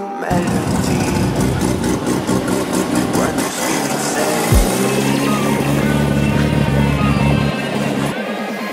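A Toyota AE86 Corolla's four-cylinder engine running as the car pulls away, with a short sharp burst about halfway through, under background music.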